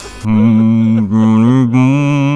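A deep male voice laughing slowly, in long, held, evenly pitched syllables that begin about a quarter second in.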